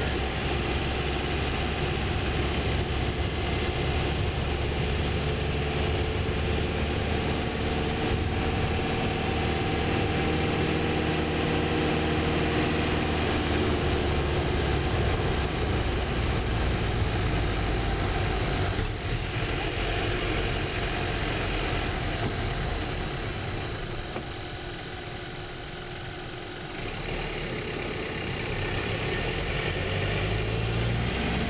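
Tour bus engine running, with road noise, heard from inside the cabin as the bus moves slowly in traffic. A steady engine note holds through the first half, then eases, and the sound drops quieter for a few seconds near the end before picking up again.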